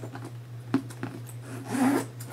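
Leather handbag being handled: a sharp click about three quarters of a second in, then a short rubbing scrape near the end, over a steady low hum.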